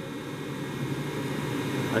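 Steady low mechanical hum with a constant low tone, even throughout, with no starts, stops or knocks.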